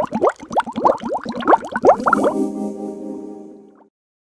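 Short logo jingle: a quick run of rising, bubbly blips, about six a second, followed by a held chord that fades out near the end.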